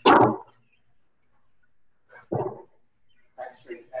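A dog barking: a sharp bark right at the start and another about two seconds in.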